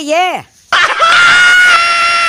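A short burst of a voice, then from under a second in a person screaming: one long, high-pitched scream held on a nearly steady note.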